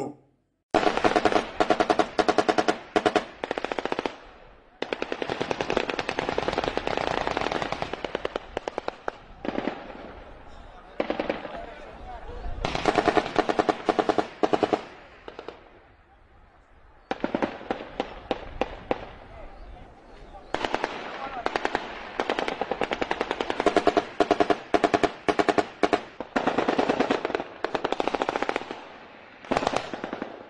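Automatic gunfire: long bursts of rapid, closely spaced shots separated by short lulls, with a near-quiet gap about 16 seconds in.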